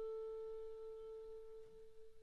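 A single held note from the clarinet quintet, near the A above middle C and almost pure in tone, fading slowly and evenly.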